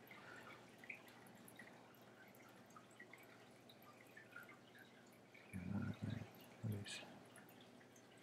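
Near silence: room tone with faint scattered ticks, broken about five and a half seconds in by a brief, quiet murmur of a man's voice.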